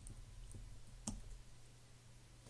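Faint keystrokes on a computer keyboard while code is edited: a weak click about half a second in and a sharper one about a second in, over a low steady hum.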